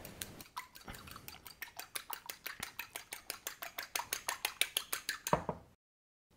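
A fork beating an egg in a small bowl for egg wash: quick, even clinks of metal against the bowl, about eight a second, with a louder knock near the end.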